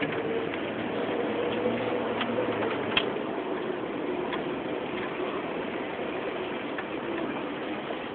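Jeep engine running at low speed, heard from inside the cab, with a few light clicks, the loudest about three seconds in.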